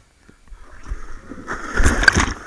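Pool water churning and sloshing, building to a loud splash near the end as someone jumps in and water crashes over the waterline camera, with low thumps of water hitting it.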